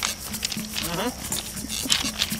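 A voice making wordless sounds, with a short rising cry about a second in, over background music.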